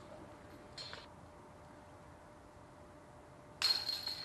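Metal clinking from a disc golf basket: a short clink about a second in, then a louder metallic clash near the end that keeps ringing.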